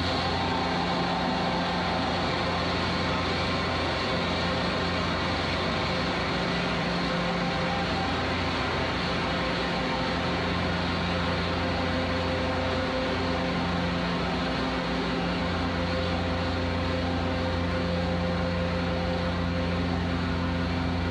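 A steady, even rush of noise with a low droning hum beneath it, unchanging and without any distinct events.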